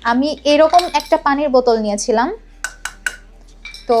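A quick run of about four light metallic clinks, a little past halfway, as a red metal water bottle is picked up and handled.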